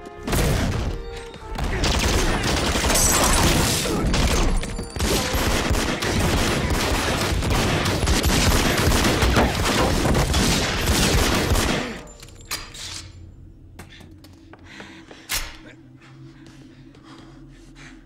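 Film gunfire: a sustained, rapid volley of shots lasting about twelve seconds, then cutting off abruptly, followed by a few scattered quieter knocks and clicks.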